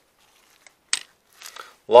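A 26.5 mm flare gun's break-open action being handled and snapped shut, with one short sharp click about a second in and a few faint handling sounds.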